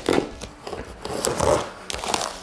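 A cardboard box of bumper plates being torn open by hand: cardboard and packing tape tearing and scraping in irregular bursts, with a few sharp clicks.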